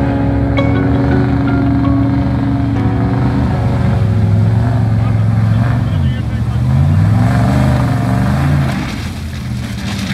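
Chevrolet Silverado pickup's engine running under load as the truck wades through shallow river water. Its pitch dips and then rises again about six to eight seconds in, as it pulls out onto the stony bank.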